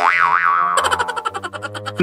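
Cartoon comedy sound effect added in editing: a springy boing whose pitch swoops up and down twice, followed by a fast-pulsing pitched tone.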